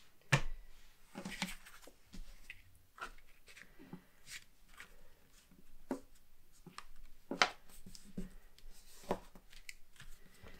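Cardstock being folded down and pressed flat by hand on a desk: scattered light rustles and taps of paper, with a sharper tap just after the start and another about seven and a half seconds in.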